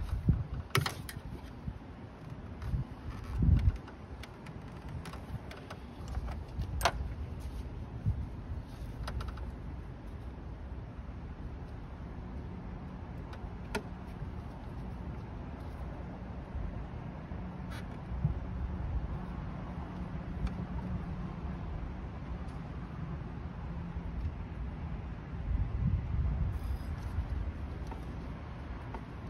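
Scattered clicks and knocks of gloved hands working a vacuum line loose from the top of a car engine's intake, over a steady low rumble.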